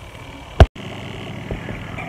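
Faint outdoor background, then a single sharp click and a split second of dead silence where two recordings are joined. A steady faint indoor hum follows.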